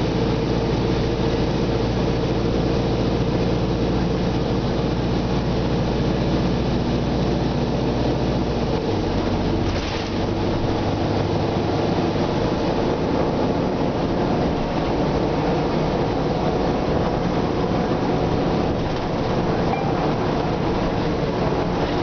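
Nova Bus RTS transit bus's rear diesel engine heard from inside the cabin, running with a steady deep drone. Its low note changes about nine seconds in, and there is a brief hiss just after.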